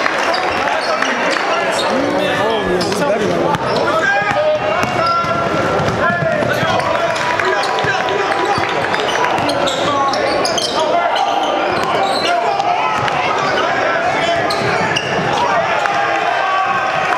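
Live game sound in a gym: a basketball bouncing on the hardwood floor, with overlapping voices of players and spectators.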